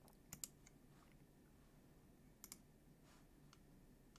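Faint computer mouse button clicks against near silence. One pair of clicks comes about a third of a second in and another about two and a half seconds in, followed by a few fainter ticks.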